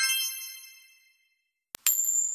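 Bright chime sound effect: one high metallic ding that rings and fades away over about a second and a half. Near the end a click, then a high sustained sparkle tone.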